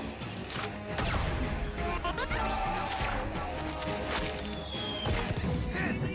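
Cartoon action music with a run of sudden hit and crash effects, about one a second.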